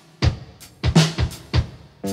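A live rock band's drum kit playing on its own for a moment: about five separate bass drum and snare hits over two seconds, with the sustained guitar chords dropped out.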